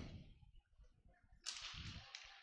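Near silence, then about one and a half seconds in a brief, faint hissing swish.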